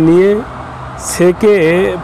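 A man speaking Bengali in short phrases, with a pause of about half a second in the middle in which a faint steady low hum remains.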